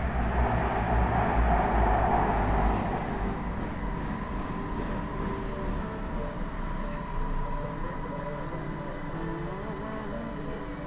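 Interior noise of a Kuala Lumpur MRT metro train in motion, heard inside the carriage: a loud rumble that eases after about three seconds into a quieter steady hum with a faint whine, as the train slows on its approach to the next station.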